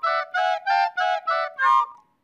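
Cartoon woodwind section playing a short run of separate notes, about three a second, as its turn in the band's roll call of sections.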